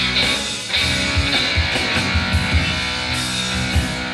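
Live rock band playing an instrumental: electric guitar lines with held notes over bass and drums, with drum hits scattered through.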